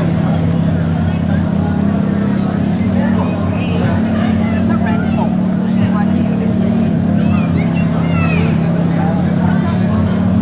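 A steady low engine-like drone that shifts in pitch a few times, with faint talk from people around it.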